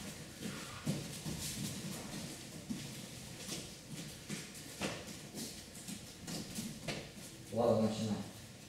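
Faint, indistinct murmur of children's voices in a hall, with scattered light knocks. A louder short voice sounds near the end.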